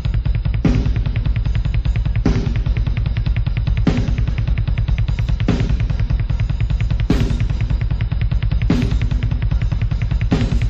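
Heavy metal song intro: drum kit playing a rapid, steady bass-drum pattern, with a cymbal-crash accent about every one and a half seconds.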